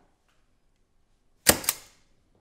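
A self-inking stamp is pressed down onto paper, giving a sharp clack about a second and a half in and a second click a moment later.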